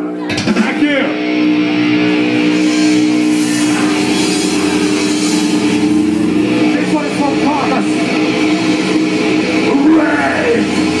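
Live metal band kicking in all at once: loud distorted electric guitars holding a long, droning chord through the PA, filmed from within the crowd. Shouted voices rise over it about half a second in and again past the middle.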